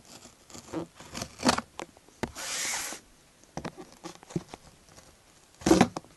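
Cardboard tablet box being handled and worked open: a string of taps, scrapes and rustles, with a short tearing or sliding scrape about two seconds in and a louder clatter near the end.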